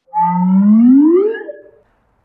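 A man's wordless, drawn-out vocal sound, one long note that glides steadily upward in pitch for about a second and a half and then fades away.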